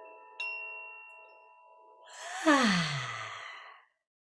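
A small metal chime is struck once about half a second in, its clear ringing tones slowly fading. From about two seconds in comes a loud voiced yawn exhaled through the mouth, its pitch sliding steeply down, and it cuts off abruptly near the end.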